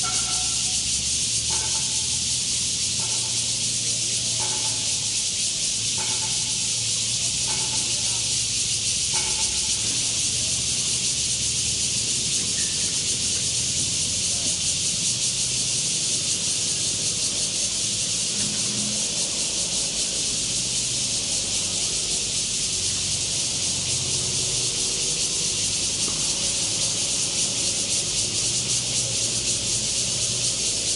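A steady high-pitched hiss with no break. During the first nine seconds there are short, faint chirps about every second and a half.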